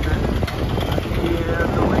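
City bus engine and road rumble heard from inside the moving bus, a steady low drone under the traffic.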